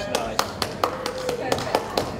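A run of sharp, unevenly spaced taps, about four a second, with a voice over them.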